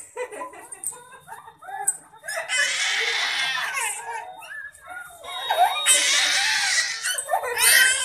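A small child screaming and crying in loud shrill stretches, starting about two and a half seconds in and again from about five seconds, after a run of short high cries.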